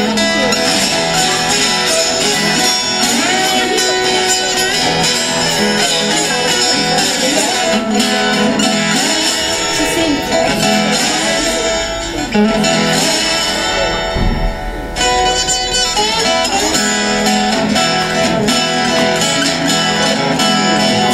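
Blues played on an acoustic guitar with a slide, notes gliding up and down in pitch over a steady repeating bass line.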